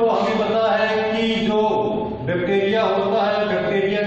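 A voice chanting in long, held, pitched notes, with a brief break about two seconds in.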